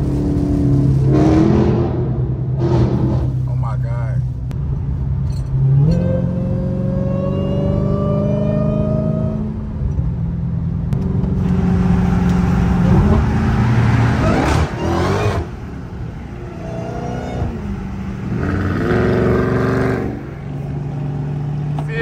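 Dodge Hellcat's supercharged 6.2-litre Hemi V8 heard from inside the cabin at freeway speed. It drones steadily, rises in pitch under acceleration about six seconds in, drops back around ten seconds, and climbs again around twelve seconds.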